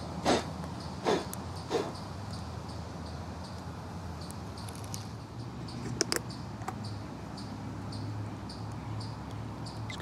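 A few short knocks and rustles in the first two seconds as camp cooking gear is handled beside a small wood-burning stove. Then a faint steady background with a few light clicks around the middle.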